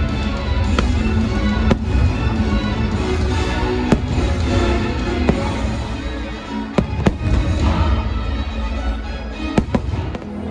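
Fireworks show bursting, with several sharp bangs spread through, the loudest about four and seven seconds in, over music playing throughout.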